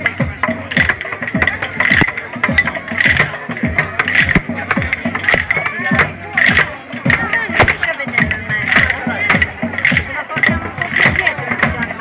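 A group of children beating plastic barrels with sticks on the barrels' rims: many sharp strikes, loosely together in a rough beat about twice a second.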